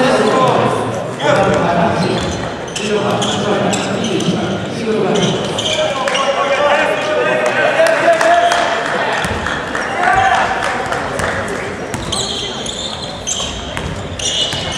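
Gymnasium sound of a basketball game in a large echoing hall: voices of players and spectators calling out, the ball bouncing on the hardwood court, and shoe squeaks near the end as play resumes.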